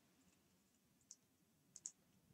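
Near silence with three faint, short clicks, one about a second in and two close together near the end: a stylus tapping on a pen tablet while handwriting.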